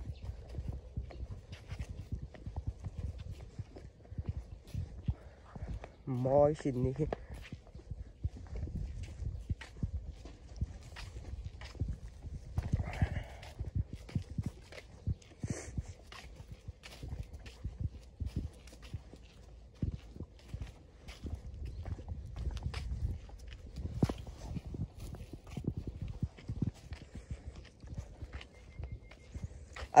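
Footsteps walking at a steady pace on a hard walkway, with a low rumble on the microphone throughout. A person laughs briefly about seven seconds in.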